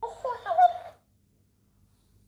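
Dancing-cactus mimic toy playing back the last words spoken to it in a squeaky, sped-up, high-pitched voice, lasting about a second.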